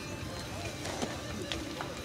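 A stock 2010 Jeep Wrangler's 3.8-litre V6 running low and steady as it crawls up a rock ledge in four-wheel drive, with a few faint clicks, likely stones under the tyres or the spotter's footsteps.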